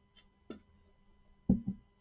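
Trading cards being handled and set down on a padded table mat: a light click, then two quick low thuds close together near the end.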